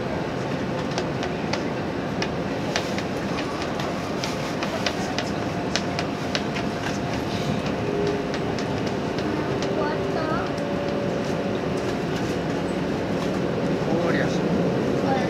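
JR Hokkaido 789 series electric train running on its terminal approach into Asahikawa, heard from inside the car: a steady rumble of wheels on rail with irregular clicks over the track, and a steady tone joining about eight seconds in.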